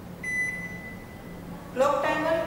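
Single high beep from a Glen GL 672 built-in microwave oven's touch control panel as the Clock/Timer button is pressed, acknowledging the press at the start of setting the clock. The beep is strongest at first and fades out over about a second.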